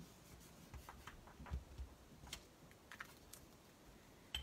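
Near silence with a few faint, scattered light clicks and taps.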